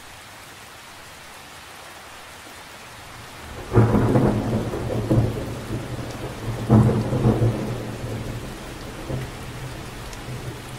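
Steady rain falling on water, then a roll of thunder breaking in suddenly about four seconds in, with a second loud peak about three seconds later, rumbling away toward the end.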